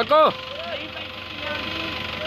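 Mahindra Novo 655 DI tractor's diesel engine running steadily at low revs. A man shouts one short word at the start.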